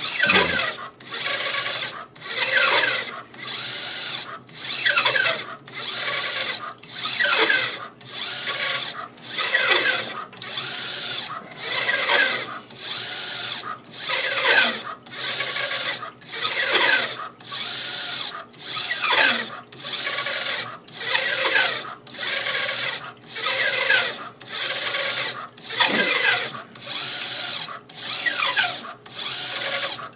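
RCA-10 corrosion scanner's drive motor moving the ultrasonic probe carriage along its rail over a steel pipe during a scan. It runs in repeated strokes about once a second, each with a falling whine and a brief pause between strokes.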